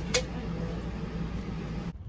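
A steady low mechanical hum with a constant drone, with one sharp click just after the start; the hum cuts off just before the end.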